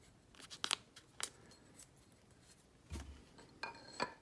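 Blue painter's tape being torn and pressed by hand around a steel tube: a handful of faint, sharp crackles and snaps. A dull knock comes about three seconds in.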